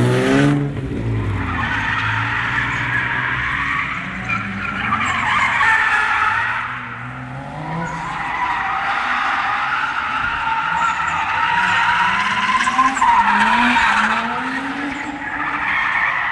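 Toyota Chaser JZX100 drifting: a continuous tyre screech under wheelspin, with the engine revving up near the start and again near the end. The screech eases briefly about halfway through.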